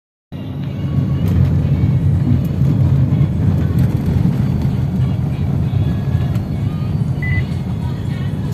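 Steady low road and engine rumble inside a moving car's cabin while it is being driven.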